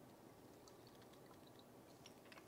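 Near silence: room tone with a few faint small clicks as a lime is pressed in a hand-held citrus squeezer.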